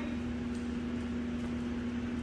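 Steady low hum of room tone in a large hall, with a few faint ticks of a dog's claws on the concrete floor.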